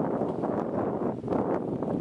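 Wind buffeting the camera's microphone outdoors: a loud, uneven rumbling rush that swells and dips in gusts.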